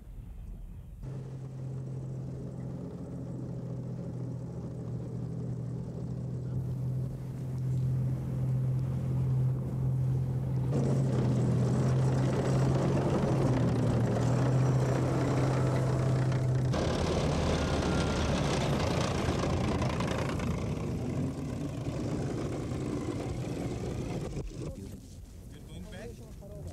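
A vehicle engine running with a steady low hum that stops about two-thirds of the way through, with noise and voices around it.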